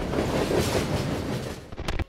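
A train passing close by, a loud, even rumbling noise that fades toward the end and is cut off sharply with a click.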